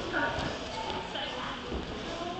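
Indistinct background voices of people talking in a climbing gym, with a few light knocks.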